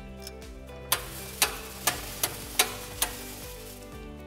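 A regular series of about six sharp mechanical clicks, roughly two or three a second, as the seed metering drive of a PÖTTINGER VITASEM M seed drill is turned a few revolutions to prime the metering wheels with seed. Background music plays under it.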